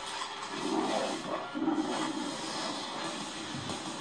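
Movie trailer soundtrack played back in the room: music with swelling, noisy sound effects.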